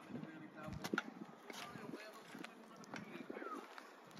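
Quiet outdoor ambience with faint, distant voices and a few light clicks.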